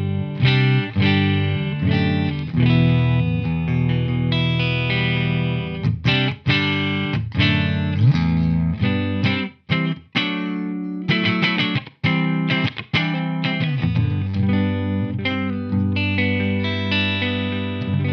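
Electric guitar, a Gibson Slash Les Paul, playing chords through a Marshall DSL40 valve combo on the clean mode of its clean channel. The chords ring and are let to sustain, with short breaks between phrases about ten, twelve and fourteen seconds in.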